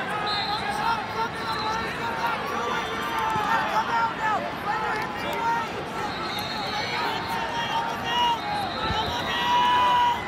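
Arena crowd noise: many voices shouting and calling at once from the stands and mat sides, with no single voice standing out.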